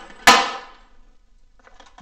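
A single sharp impact about a quarter second in, with a short ringing decay, followed by quiet.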